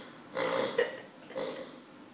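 Pink rubber piggy squeak toy squeezed in a German Shepherd puppy's jaws, sounding twice: a longer squeak about half a second in and a shorter one about a second and a half in.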